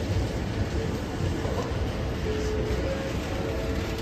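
Electric commuter train pulling out past the platform: a steady low rumble of wheels on rails with a faint whine over it.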